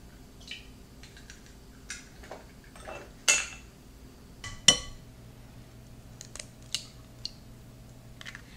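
Eggs being cracked on the rim of a ceramic mixing bowl: a series of sharp taps and clicks of shell on crockery, the two loudest about three and four and a half seconds in.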